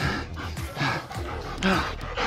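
A bull-breed hunting dog panting close by in quick, breathy puffs, about two or three a second, winded after the long fight holding a boar.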